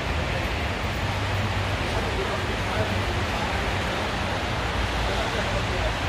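Steady hiss of rain falling on wet pavement, with a low rumble underneath and faint voices in the background.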